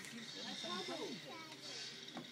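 Low, indistinct talk from people close by, with a thin steady high tone underneath.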